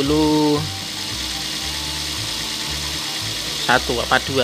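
Background music over the steady running of a Toyota Rush's engine, idling after being jump-started from a motorcycle battery because its own battery is weak. A brief voice sound comes at the start and a few words near the end.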